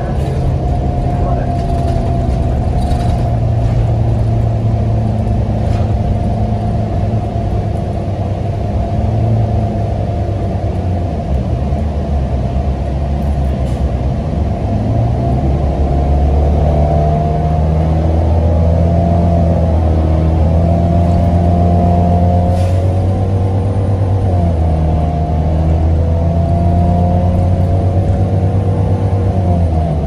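Inside a NABI 42-BRT transit bus under way: the engine and drivetrain run with a steady hum and whine. From about halfway through, the pitch climbs as the bus gathers speed, then dips briefly twice.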